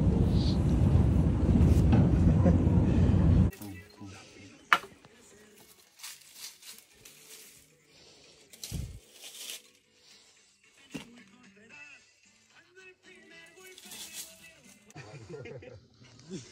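Loud, steady rumble of a vehicle riding over a cobblestone street, which cuts off suddenly about three and a half seconds in. After that only faint scattered sounds remain, with a sharp click and later a short low thump.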